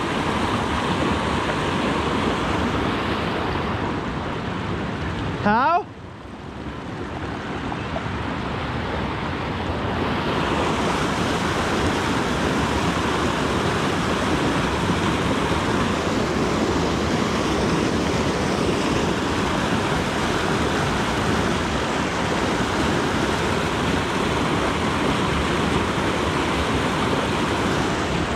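Steady rush of creek water pouring over a small rocky cascade. About five and a half seconds in, a brief rising sound cuts through, and the rush drops lower for a few seconds before coming back up.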